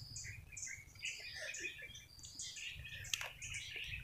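Birds chirping in the background: many short, high chirps at varied pitches, with one sharp click about three seconds in.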